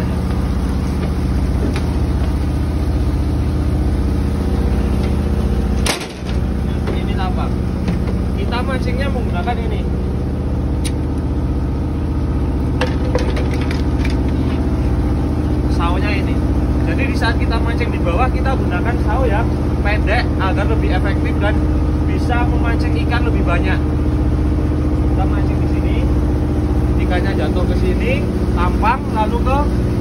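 Steady, loud hum of a fishing boat's machinery, made of several low, even tones. It briefly cuts out about six seconds in. A man's voice is heard at times over it.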